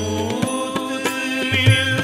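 Sikh shabad kirtan: harmoniums holding sustained notes over tabla strokes, the tabla's bass drum sliding in pitch, with a sung vocal line.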